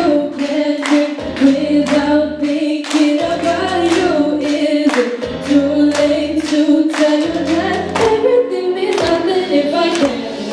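Two girls singing a pop song live into microphones over a backing track with a steady beat. Children clap along.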